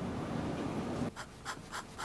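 Fountain pen nib scratching on lined paper in short, quick strokes, about three a second, starting about a second in after a low rumbling background cuts off.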